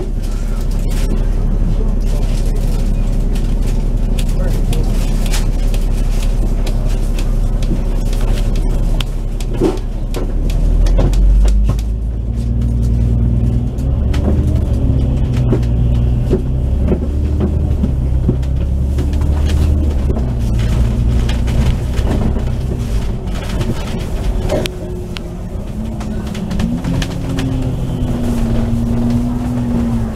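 Double-decker bus engine and transmission heard from on board: a steady low running hum, then from about a third of the way in a rising whine as the bus pulls away. The pitch steps through gear changes and climbs again near the end.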